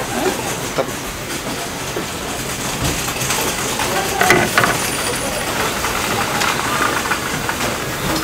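Steady hiss from a large, heavily steaming stockpot of braised pig's feet. A few short metallic clinks come from tongs and a metal strainer, about three and four seconds in.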